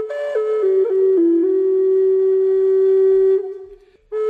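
Intro music: a solo flute melody that steps briefly up, then down to a long held note, which fades away shortly before the end as the next phrase begins.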